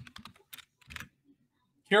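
Typing on a computer keyboard: a handful of scattered key clicks, mostly in the first second, then a pause.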